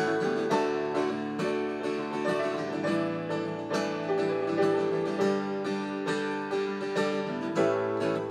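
Live band music: an acoustic guitar picked and strummed in a steady rhythm over sustained keyboard chords.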